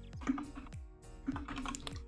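Typing on a computer keyboard: irregular keystroke clicks, over soft background music.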